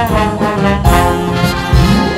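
Live jazz band with trumpets playing. The horns sound together in a run of short, accented notes over a low accompaniment.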